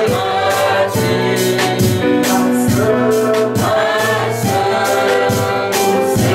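Gospel worship song sung by a choir of voices, with instrumental accompaniment and a steady beat.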